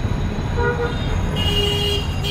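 Vehicle horns sounding in busy street traffic, over a steady low traffic rumble. A short toot comes about half a second in, then a longer horn blast from about a second and a half in.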